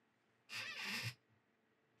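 A brief rustling scuff, about half a second long, as a hand grabs and catches a small object.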